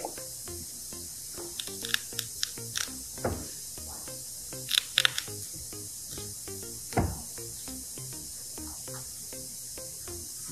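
Quiet background music with soft low notes, broken by a few short, sharp scrapes and clicks from a small blade trimming hardened resin off the edge of a mold. The scrapes come in a cluster early on, a pair around the middle and one more a couple of seconds later.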